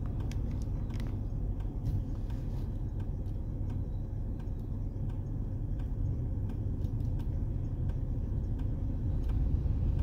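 Steady low rumble of a car idling at a standstill, heard from inside the cabin.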